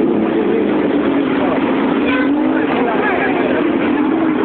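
Several motorcycle engines running close by, a steady loud mix, with voices in the background.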